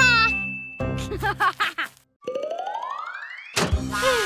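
Cartoon sound effects with children's music: a falling-pitched ding at the start, then in the second half a long rising glide that ends in a sudden hit.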